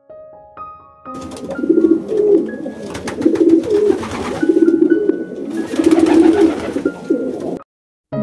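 Pigeons cooing: a series of repeated low coos that starts about a second in and stops shortly before the end.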